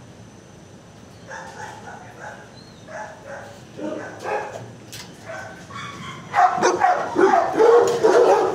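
Shelter dogs barking and yipping, faint and scattered at first, then much louder and more frequent from about six seconds in.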